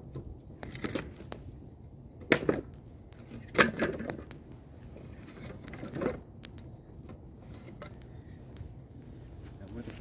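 Wood campfire crackling, with scattered sharp pops over a low steady rumble. A few louder, fuller bursts come about two, three and a half and six seconds in.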